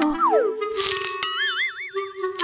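Cartoon sound effects over music: a falling tone, a short tearing hiss as a skirt splits at the seam, then a click and a wobbling boing.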